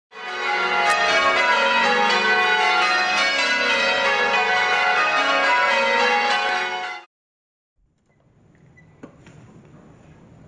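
Church bells ringing, many overlapping peals sounding together, cut off abruptly after about seven seconds. Then faint room tone with a small knock.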